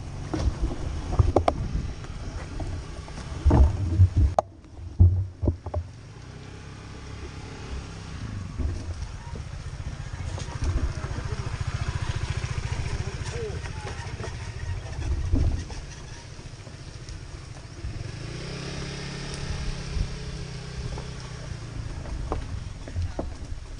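Several loud knocks and clatters in the first few seconds, then small motorbike engines running steadily nearby for most of the rest.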